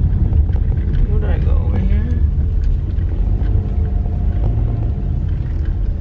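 Steady low rumble of engine and road noise inside a moving car's cabin, with a brief murmur of a voice about a second in.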